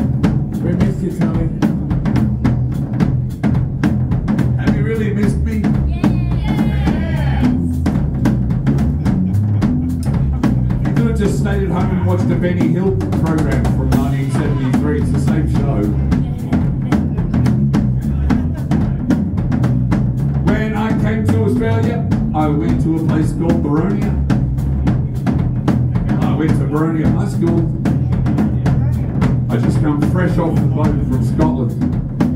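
Live band playing without vocals: a drum kit keeps a steady beat with bass drum and snare, under electric bass guitar, with electric guitar lines coming in and out.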